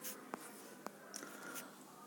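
A few soft taps with light rubbing between them, as of a hand handling the touchscreen tablet on which the document is being scrolled, over a faint background hiss.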